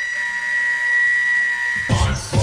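A single high synth tone held steady in a breakdown of an electronic club track. It cuts off near the end as the beat drops back in with heavy bass.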